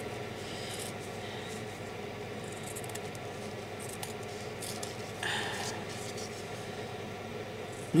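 Small scissors cutting quietly through a strip of fabric-covered double-sided carpet tape, the blades snipping and rubbing against a steady background hum.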